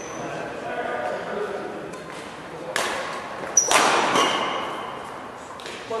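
Two sharp racket strikes on a badminton shuttlecock, a little under a second apart near the middle. The second is louder and rings on in the hall's echo, over faint background voices.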